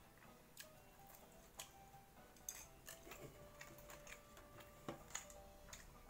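Faint irregular clicks and taps of chopsticks on a plastic bento box while eating, with faint music underneath.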